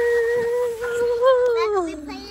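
A long, held vocal cry going down a playground slide: one voice stays at a steady pitch, then falls away near the end. A second, higher-pitched voice, likely the child's, joins in about a second in.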